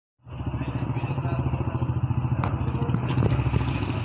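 Motorcycle engine idling close by: a steady, rapid putter, with a sharp click about two and a half seconds in.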